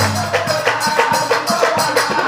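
Assamese nagara naam devotional music: drums and cymbals strike about four times a second under a sustained pitched melody line.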